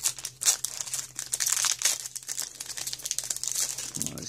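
Foil wrapper of a Pokémon booster pack crinkling as it is handled and torn open, a dense run of crackles with the sharpest about half a second in.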